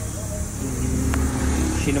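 A motor vehicle's engine running close by: a low rumble with a steady hum, and one faint click a little past halfway.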